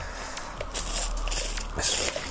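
Plastic bubble wrap rustling and crinkling as it is handled and pulled off a packed object, with a louder crinkle near the end.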